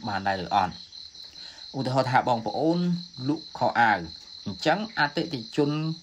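A man talking, with a pause of about a second early on, over a steady high-pitched whine.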